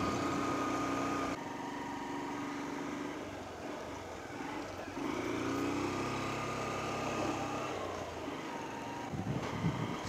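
Small motorcycle engine running at low, steady revs while being ridden gently uphill; its note rises about five seconds in. The clutch is slipping, so the bike cannot be given much throttle on the climb.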